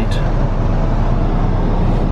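Car engine idling with the heater blower running to defrost the windscreen: a steady rushing noise over a low hum, heard inside the cabin.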